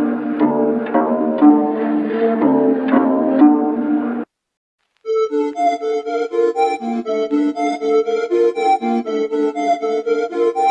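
Two melody loops played one after another. The first has regular sharp note attacks and cuts off suddenly about four seconds in. After a short silence, a second loop starts with held keyboard-like notes in a quick pulsing rhythm.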